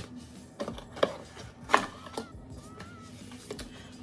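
Cardboard packaging and paper being handled: a few scattered taps and rustles, the sharpest a little under two seconds in.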